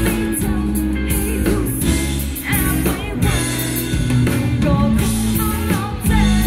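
A woman singing live into a microphone with a pop-rock band, electric guitar and keyboard, heard through a stage PA, the music continuous throughout.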